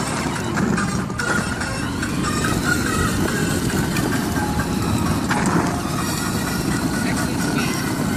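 Battery-powered ride-on toy jeep rolling over asphalt: a steady rumble and rattle from its hard plastic wheels and electric drive.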